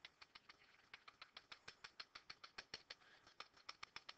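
Faint, rapid ticking of a stylus on a pen tablet or touchscreen, about nine clicks a second, as a circle is drawn.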